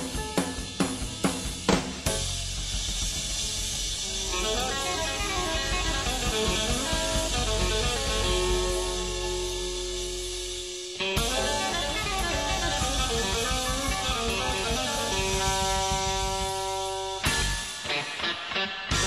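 Live blues band playing an instrumental passage. A run of drum-kit strokes opens it, then electric guitar holds long sustained notes over cymbal wash and bass. The band breaks off briefly about eleven seconds in, and drum hits return near the end.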